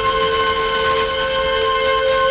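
Music from France Inter received on 97.4 MHz by sporadic-E skip, heard through a Blaupunkt car radio: a chord of steady held notes over a faint background hiss.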